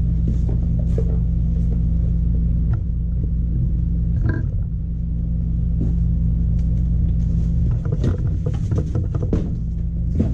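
A steady low machine hum fills the room, over the crinkle of plastic wrap and knocks of cardboard as a boxed power window regulator is handled and lifted out, with a busier patch of handling near the end.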